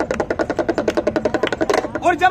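Damru (small two-headed hand drum) rattled fast by a twist of the wrist, its knotted cords striking the skins in a rapid, even beat, many strokes a second.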